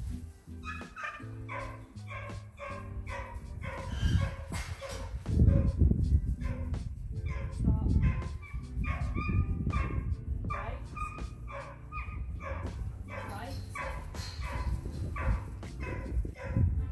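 Background music with a stepping low line, and a dog barking repeatedly over it.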